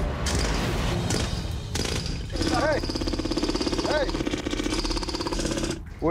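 Pneumatic jackhammer with a spade bit breaking up hard clay. It runs as noisy hammering for the first couple of seconds, then as a steady rapid chatter from a little past two seconds in that cuts off just before the end. A voice calls out briefly twice over it.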